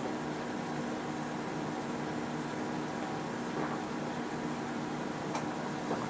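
A steady low electrical hum with a faint hiss, unchanging throughout.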